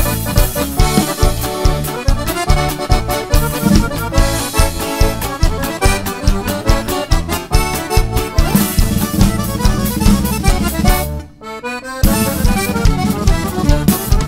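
Live norteño band playing an instrumental break: a button accordion carries the melody over guitar, electric bass and drum kit. The band drops out briefly about eleven seconds in, then comes back in.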